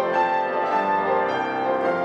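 Carl Rönisch grand piano played solo, with sustained notes ringing on over one another.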